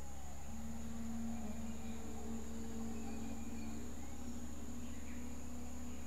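A steady, high-pitched insect drone, typical of crickets or cicadas in tropical forest, over a low steady rumble. Soft sustained low tones come in about half a second in and swell and fade beneath it.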